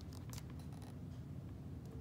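Faint paper handling: a few soft ticks near the start as hands settle on the open book's pages, over a low steady room hum.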